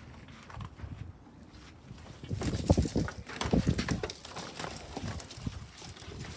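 Irregular thumps and rustling from a plush toy and a handheld phone being moved about, starting about two seconds in, a few knocks a second.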